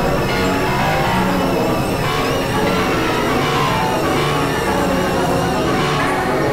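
Experimental electronic music: dense, layered synthesizer drones at a steady level, with a low rumble beneath and a high warbling tone above.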